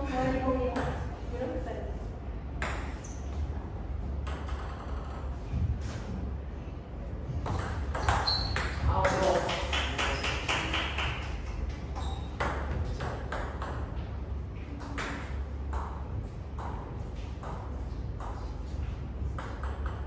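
Table tennis ball clicking as it strikes the table and the bats: scattered single clicks at first, then a steady series of about two clicks a second in the second half, as in a rally.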